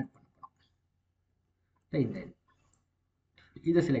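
A few computer mouse clicks while text is selected on screen, with quiet between them and short bits of speech about halfway through and near the end.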